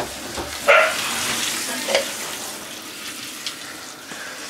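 Handheld shower head spraying water steadily over a wet cat, with the cat meowing in protest once about two-thirds of a second in and again, more briefly, about two seconds in.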